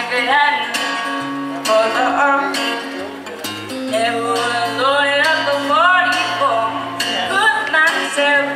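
A woman singing a country song into a microphone over strummed acoustic guitar, performed live through a PA.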